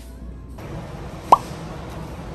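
A single short pop sound effect that glides quickly upward, about a second in. It sits over a steady hiss of large-store ambience that starts half a second in.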